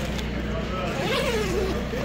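Waterproof 600D shelter fabric rustling as it is handled and spread out, over a steady low hum, with a faint voice in the background about a second in.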